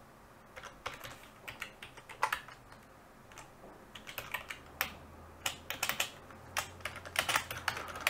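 Typing on a computer keyboard: irregular keystrokes in short runs with pauses between them.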